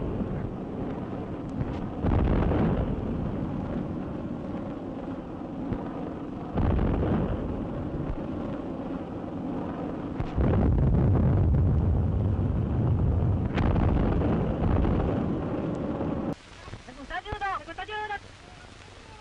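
Old wartime film soundtrack of anti-aircraft gunfire and explosions during an air raid: four sudden heavy blasts with continuous rumbling between them. About two seconds before the end it drops to a much quieter passage.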